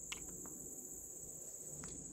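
Steady high-pitched chorus of crickets, a continuous unbroken trill, with two faint clicks, one just after the start and one near the end.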